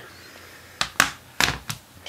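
Four short, sharp clicks and taps in quick succession starting just under a second in, the loudest about a second in: handling noise as small items are picked up and set down.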